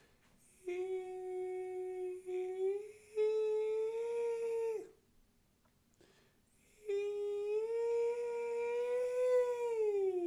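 A single voice holding two long notes: the first lasts about four seconds and steps up slightly partway through. After a short pause the second begins, rises a little, then starts sliding steadily down in pitch near the end.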